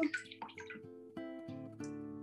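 Soft plucked acoustic guitar background music, with a brief swish of a paintbrush dipped into a jar of water near the start.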